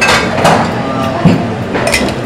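Ice clinking and knocking in a cocktail shaker as a martini is mixed, in irregular sharp strokes.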